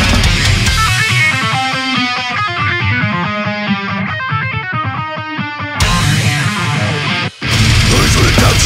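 Heavy metal track. The full band plays for the first second, then drops away to a lone guitar riff of fast picked notes. The full band comes back in about two seconds before the end, cutting out for an instant just before it resumes.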